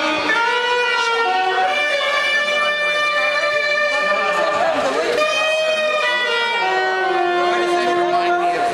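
Saxophone playing slow, long held notes one after another, each lasting a second or two, with some gliding between pitches.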